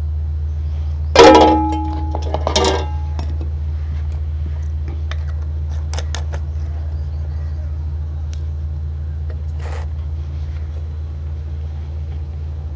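A steel mug is set down twice into a steel pot, each time with a clank that rings on briefly, about a second in and again a second and a half later. Light clicks of a plastic funnel and bottle being handled follow, over a steady low hum.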